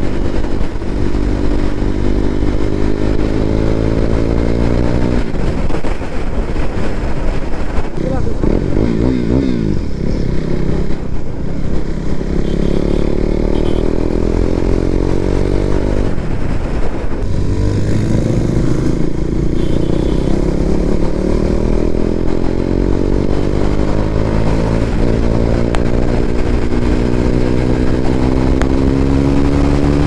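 KTM Duke 390's single-cylinder engine under hard acceleration through the gears. Its pitch climbs steadily in each gear and drops back at each upshift, with a long climb at the end.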